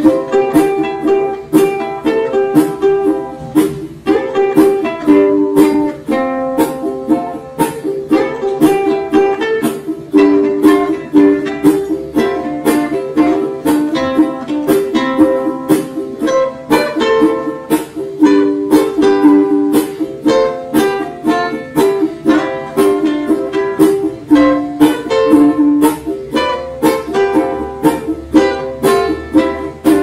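Two ukuleles playing an instrumental solo break: steady strummed chords with a picked melody line over them.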